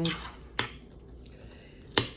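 Metal spoon clinking against a ceramic bowl of cereal and fruit twice, once about half a second in and again, louder, near the end.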